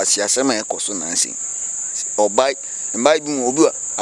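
Crickets chirring in a steady, unbroken high-pitched drone, with a man talking in bursts over it.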